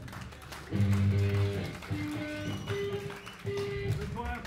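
Amplified electric guitar picking a few sustained single notes: a low, loud note about a second in, then three higher notes in turn.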